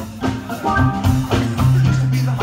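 Live rock band playing an instrumental passage: electric guitars over a prominent bass guitar line and drum kit.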